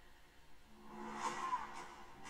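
Film trailer soundtrack playing from a speaker: music and sound effects, quiet at first, then swelling up a little under a second in.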